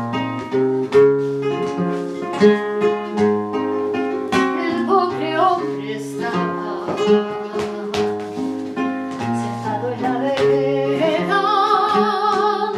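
Flamenco guitar playing a run of plucked notes and strums. A woman's voice comes in with vibrato briefly about five seconds in and again strongly near the end, singing over the guitar.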